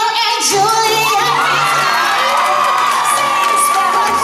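A woman belting a long, held high note in a musical-theatre song, starting about a second in and sustained to the end, while the audience cheers and whoops over it.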